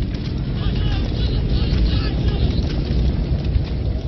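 Deep, steady rumble with distant voices crying out over it in the first half, a battle-scene sound effect.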